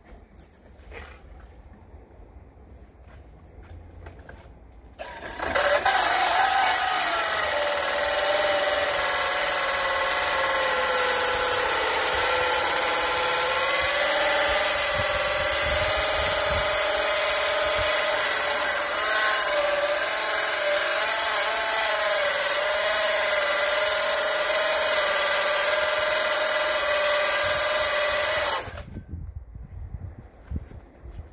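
Cordless drill turning a bi-metal hole saw against a stainless steel door cover plate: a steady, high metal-on-metal screech with a whining tone that sinks slightly after it starts, then holds. It starts about five seconds in and stops near the end. The saw's teeth are wearing dull without cutting through the stainless.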